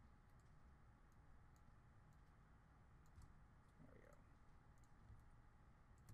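Near silence: faint, irregular computer mouse clicks over low room hiss.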